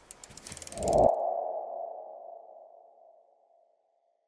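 Logo animation sound effect: a quick run of light ticks, then about a second in a single ringing tone that swells and fades away over about two seconds.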